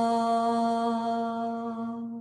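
A voice chanting a long, held 'Om' on one steady pitch, fading toward the end as the breath runs out.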